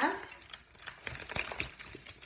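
Close rustling and a quick run of light, irregular clicks and taps as a hand reaches right past the recording phone to pick up a satsuma.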